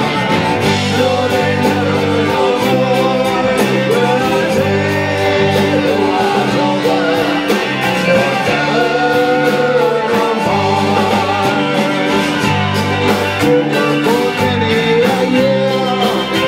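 Live Irish pub band playing a song with a steady beat: electric and acoustic guitars, fiddle and bass under a sung lead vocal.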